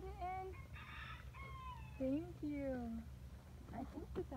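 Several drawn-out human voice sounds without clear words, sliding up and down in pitch, over a steady low rumble.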